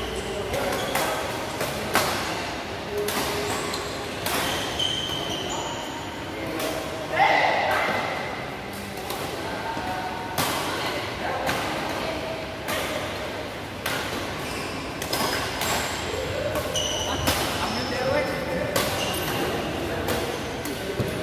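Badminton rallies in an echoing sports hall: sharp cracks of rackets striking the shuttlecock, close and from neighbouring courts, with short high squeaks of shoes on the court. Players' voices run underneath, with a loud call about seven seconds in.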